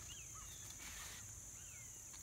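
Faint outdoor ambience: a few short, falling bird chirps over a steady high-pitched insect drone.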